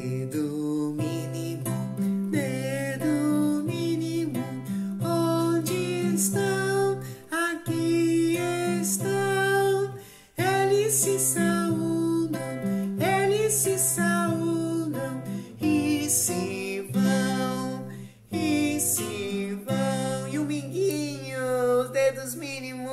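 A man singing a children's finger song, the little-finger verse, to a strummed acoustic guitar. The sung phrases pause briefly a few times.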